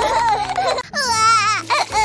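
A cartoon baby crying: a high, wavering wail that starts about a second in, after background music and voices cut off.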